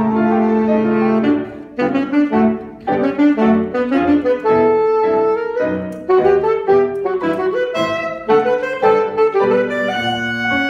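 Alto saxophone playing a solo passage. A long held note gives way, a little over a second in, to quick runs of short notes, broken by a few longer held notes.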